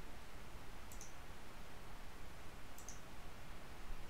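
Two faint computer mouse clicks, nearly two seconds apart, over a low steady hiss.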